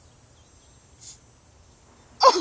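Quiet outdoor background ambience, with one brief soft hiss about a second in.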